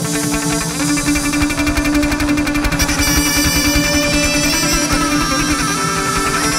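Chầu văn ritual music playing an instrumental passage: plucked strings over a fast, even percussion beat, with a held tone underneath.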